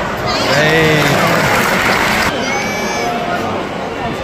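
Football stadium crowd noise: spectators shouting and calling out around the stands, with some cheering. The sound changes abruptly a little past halfway, where the footage cuts.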